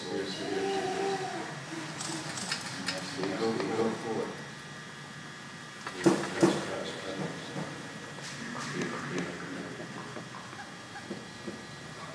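A voice speaking slowly with long pauses, not in English, with two sharp knocks close together about six seconds in.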